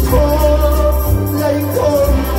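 A man singing into a microphone over live electronic keyboard accompaniment with a steady bass line.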